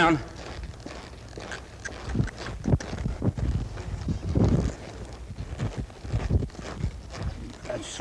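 Hoofbeats of a palomino mare in loose arena dirt as she runs, stops and turns back: a string of uneven thuds.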